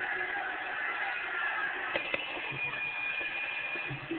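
Large arena crowd cheering, a steady din, with a few short clicks about two seconds in.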